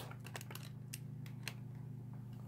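Faint, scattered clicks and taps of small parts being handled: an Allen wrench and a slot-car tire being worked off its axle. A steady low hum runs underneath.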